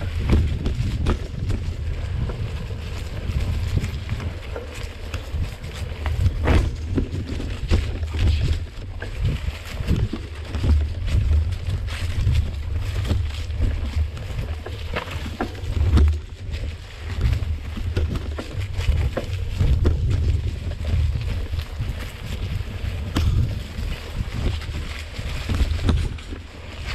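Wind buffeting the microphone of a camera riding on a moving mountain bike, a steady low rumble, with frequent knocks and rattles as the fat-tyre bike rolls over the leaf-covered dirt trail.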